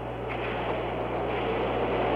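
Steady hiss over a low, constant hum: the background noise of the open launch-control audio line between announcements.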